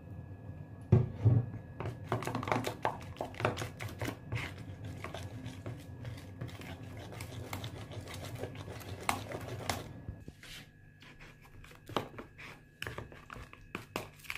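A metal spoon stirring and scraping a wet herbal paste in a plastic tub, with rapid irregular clicks and scrapes that ease off after about ten seconds. About a second in, two heavy thumps are the loudest sounds.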